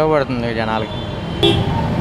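A man speaking into an interviewer's microphone, with steady street traffic noise behind.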